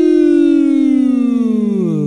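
The final note of a sung segment jingle, held long and sliding slowly down in pitch, wavering slightly near the end.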